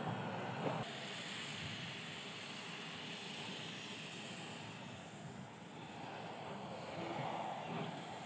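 Steam motor coach hissing steadily from its open cylinder drain cocks as it moves slowly forward, with no distinct exhaust beat.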